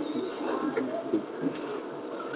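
A bird cooing softly in the background, a few short low calls, in a pause in a man's speech.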